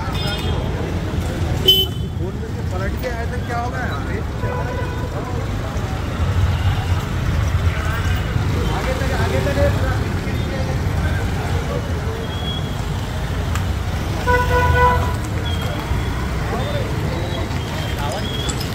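Street ambience: a steady traffic rumble with voices in the background, a short sharp knock about two seconds in, and a vehicle horn sounding for about a second near the end.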